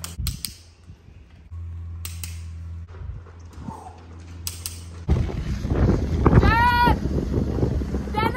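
Metal grill tongs clacking, three pairs of sharp clicks a couple of seconds apart, at a charcoal kettle grill. About five seconds in, wind buffets the microphone, and near the end there is one long, high, steady call.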